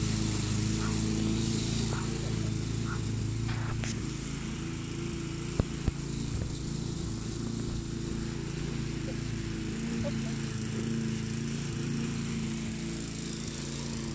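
A steady engine drone with an unchanging pitch, with two short sharp clicks about halfway through.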